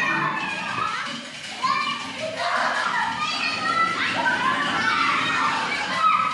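A group of young children's high-pitched voices overlapping as they play together, calling out with pitches that slide up and down.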